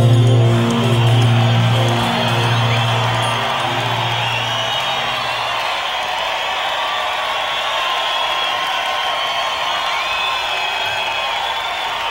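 A rock band's sustained low chord rings out and fades away about halfway through, over a cheering arena crowd with whistles that carries on steadily after the music stops.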